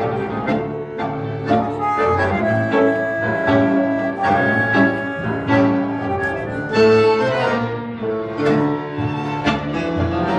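Tango played by a small orchestra of violins, double bass, bandoneons and piano, with strongly accented beats about two a second.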